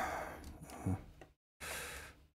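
Plastic clamp-brick parts being handled and pressed onto a large brick-built model: a rough plastic rustle that starts suddenly and fades over about a second, then a short hissing noise near the end.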